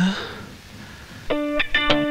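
Background film score: after a short lull, plucked guitar notes begin about a second and a half in, a slow melodic phrase of separate, clearly struck notes.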